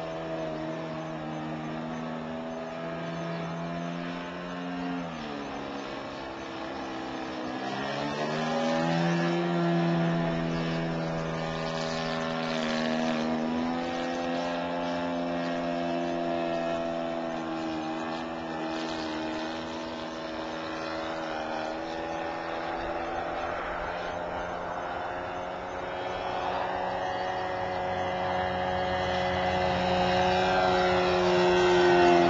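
Engine and propeller of a radio-controlled Seagull Decathlon model airplane in flight, running with a steady pitched drone. The pitch drops about five seconds in, climbs back up about three seconds later, and then holds fairly steady.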